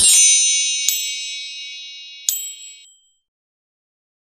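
Bright shimmering chime of a logo sound effect, many high ringing tones struck together and fading out over about three seconds, with two short sparkling tinkles, one about a second in and one past two seconds.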